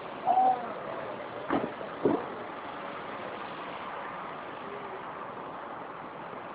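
Steady background rumble and hiss like street traffic, with a short pitched tone just after the start and two sharp knocks about half a second apart.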